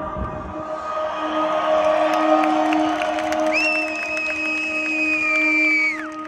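Live electronic dance music from a festival PA, heard from within the crowd: the bass drops out early and sustained synth chords carry on, with the crowd cheering. A high held note slides up about halfway through, holds, and falls away at the end.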